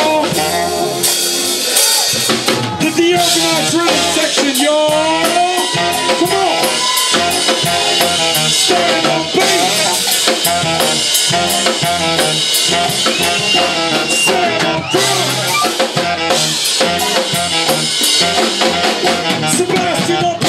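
Live jazz-funk band playing loudly, the drum kit prominent with a steady beat of kick, snare and rimshots under an electric bass line and a gliding melodic lead line.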